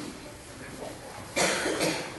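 A person coughs, a sudden loud double cough a little past halfway, over a low background murmur.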